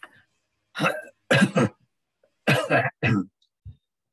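A person coughing and clearing their throat: two pairs of short, harsh coughs, the first pair about a second in and the second about two and a half seconds in.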